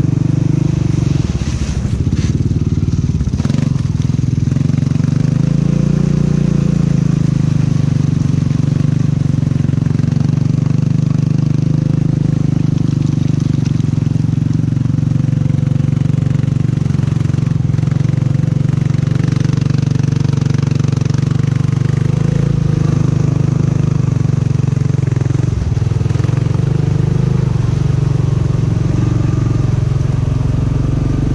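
A 2016 Honda Rubicon ATV's engine running steadily at low speed as it crawls through shallow muddy water, with a brief rise in revs about six seconds in. A few knocks sound about two to four seconds in.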